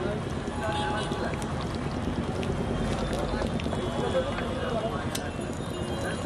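Busy street-food stall: background chatter of several people over street noise, with a few sharp clinks of a metal spatula on the griddle near the end.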